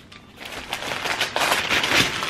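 Brown kraft-paper mailer being torn open and handled: dense crackling and rustling of stiff paper that starts about half a second in and grows louder.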